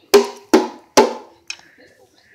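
Three sharp knocks on a hard, resonant object, evenly spaced about half a second apart, each ringing briefly before it dies away.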